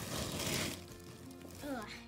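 Clear plastic bag and shredded paper rustling as the paper is shaken out of the bag, in a short burst lasting under a second near the start.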